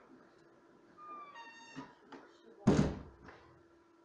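A short high-pitched squeak and a few light clicks, then one loud thump about two and a half seconds in, dying away over half a second, over a faint steady hum.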